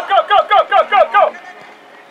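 A high-pitched voice shouting a rapid string of about eight short syllables, stopping about a second and a half in, like a spectator's quick chant of "ja, ja, ja" at the match.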